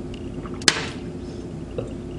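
A single sharp clink of glassware knocked against something hard, about a third of the way in, with a short ring after it.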